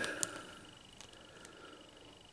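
Quiet room tone with a faint, steady high whine and a few soft clicks from fingers handling and turning the head of a plastic action figure, the sharpest click about a quarter second in.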